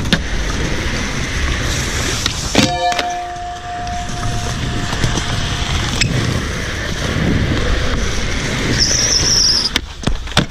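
Skateboard wheels rolling over smooth concrete, a steady rumble and hiss. About two and a half seconds in there is a sharp knock that leaves a short ringing tone. Near the end comes a brief high squeal, then a crack as the board's tail is popped for a flip trick.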